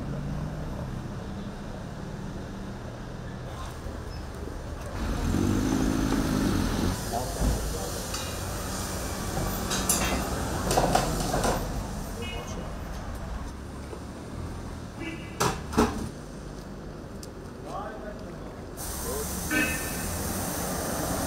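City street noise: a continuous low rumble of traffic and vehicle engines, with people talking in the background and a few sharp knocks, two of them close together about three-quarters of the way through.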